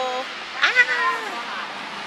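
Two drawn-out voiced calls, each gliding up and down in pitch: a short one right at the start, then a longer one about half a second in that lasts about a second.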